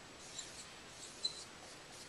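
Dry-erase marker squeaking and scratching on a whiteboard as numbers are written, with a few short high squeaks, the sharpest a little past a second in.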